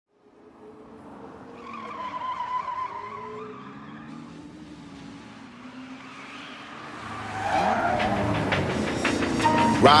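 Car engine revving, with tyre squeal, fading in from silence and growing louder from about seven seconds in, its pitch gliding up. Rap vocals come in just before the end.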